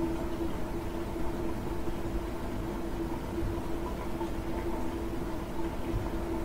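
Steady background hum and hiss with one constant mid-low tone, room noise picked up by the microphone while nobody speaks.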